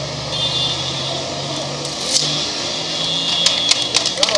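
A steady engine hum from a running vehicle or machine under outdoor crowd noise. Scattered hand claps begin near the end as a ribbon is cut.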